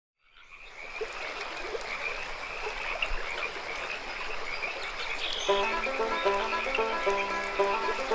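A chorus of frogs croaking, fading in at the start. About five and a half seconds in, music with evenly repeated picked notes starts up over the frogs.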